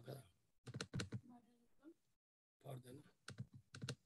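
Faint computer keyboard typing, two short runs of quick key clicks about a second in and again near the end, picked up by a video-call microphone that cuts out to dead silence between them.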